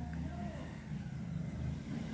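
A low steady background rumble, with a faint voice briefly near the start.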